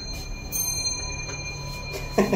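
Elevator chime: a bell-like ding struck about half a second in, ringing on as a few steady high tones that fade near the end.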